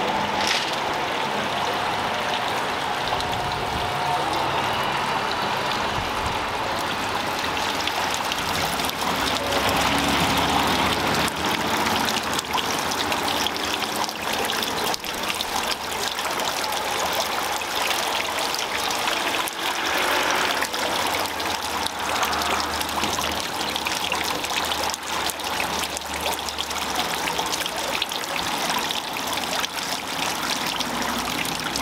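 Running water splashing steadily.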